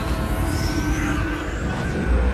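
Action-movie soundtrack: a music score mixed with a steady, loud rumbling sci-fi energy effect, with a short rising whine about halfway through.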